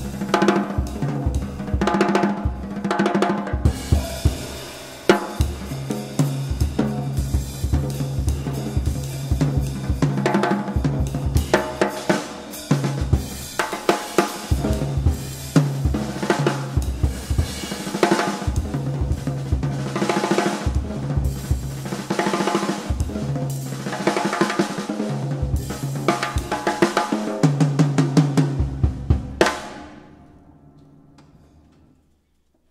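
Jazz drum kit solo played with sticks: fast snare and tom strokes over bass drum and cymbals. It stops abruptly at the very end.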